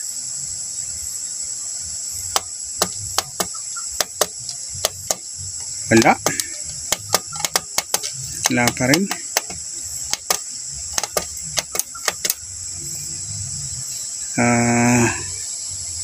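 An irregular run of sharp plastic clicks as the front-panel buttons of a Tosunra CRT television are pressed over and over; the set does not come on. A steady high-pitched insect chorus runs underneath.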